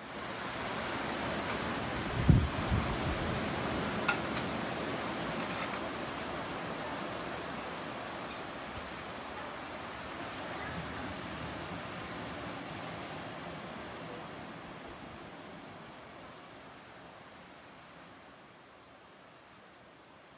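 Steady wash of ocean surf on a beach, with a few low thumps about two seconds in. The surf fades gradually over the second half.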